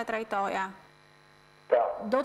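A woman speaking, broken by a pause of about a second in which a steady electrical hum is left on its own. Near the end there is a sharp breath, and the speech picks up again.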